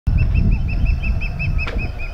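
A bird calling a rapid series of short, even notes, about six a second, over a low rumble, with a sharp click near the end.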